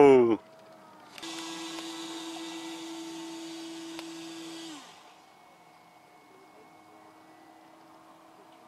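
A radio-controlled model plane's electric motor running at one steady pitch with a hiss from about a second in, then winding down and stopping a little before five seconds; after that only a faint low hum.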